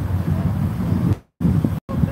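Low rumble of wind buffeting a phone microphone, with outdoor traffic hum beneath it; the sound cuts out to silence twice, briefly, in the second half.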